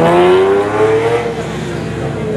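Ferrari 512 TR's flat-12 engine accelerating hard from a standing start, its pitch rising steadily, then dropping at a gear change about a second in as the car pulls away.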